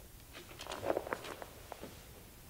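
A few soft footsteps and rustles of sheet music as a pianist moves to a grand piano and settles at it, with several light knocks and rustles about half a second to a second and a half in.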